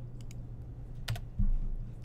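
Computer keyboard keys being pressed: a few light taps, then a sharper key click about a second in, followed by a low thud.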